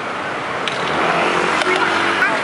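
A motor scooter passing close by, its engine getting louder through the second half.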